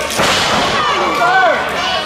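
A wrestler slammed down onto the ring: one loud crash of a body hitting the canvas-covered ring boards just after the start, with a short echo in the hall.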